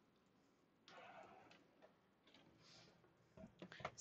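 Near silence: room tone with a faint rustle about a second in and a few light clicks near the end, as items are handled and set down on a work surface.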